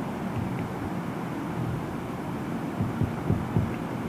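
Marker pen writing on a whiteboard: a steady scratchy rubbing with soft, irregular low knocks as the strokes are made.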